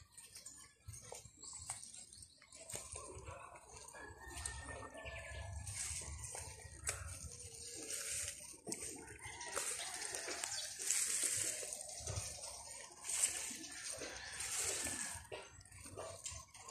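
Leafy spinach plants rustling as they are pulled and bunched by hand, in irregular bursts of rustle with small clicks, louder in the second half.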